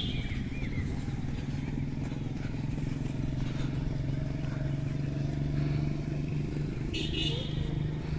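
A motor vehicle's engine running at a steady pitch, with birds chirping briefly at the start and a short high call about seven seconds in.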